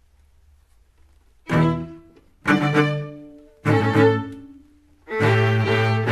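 Bowed string instruments, the cello prominent, play three short separate chords about a second apart, each dying away, then a held chord about five seconds in: the instrumental opening of a school house anthem. A faint low hum comes before the first chord.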